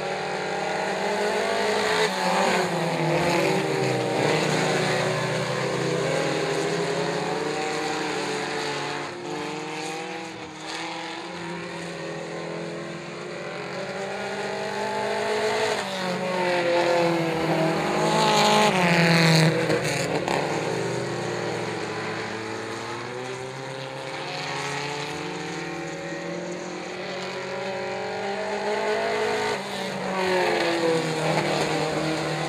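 Several four-cylinder mini stock race cars running hard on a dirt oval, their engines revving up and down through the turns in overlapping pitches. The sound peaks as cars pass close a little past halfway.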